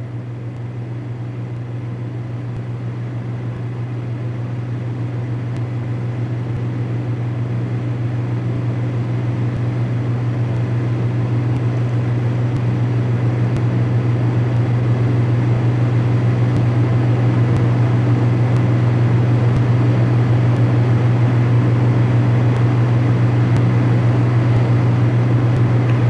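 A steady low hum with a fainter hiss above it, slowly growing louder over the whole stretch.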